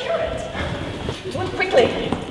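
Short wordless vocal sounds from a performer: brief rising and falling calls, clustered in the second half.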